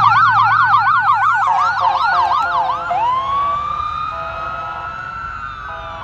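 Ambulance electronic siren on a fast yelp, with horn blasts over it, switching about three seconds in to a wail that rises and then holds. It grows fainter as the ambulance drives away.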